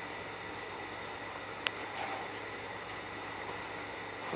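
Steady static hiss from a spirit box sweeping radio stations, with a faint hum under it and one sharp click a little before midway.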